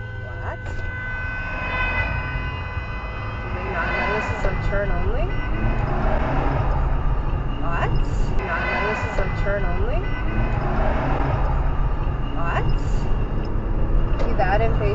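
A car horn held in a long steady blast that fades out about five seconds in, over the engine and road rumble of the recording car. After that come raised, shouting voices.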